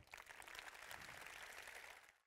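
Faint audience applause: many hands clapping together in a steady patter.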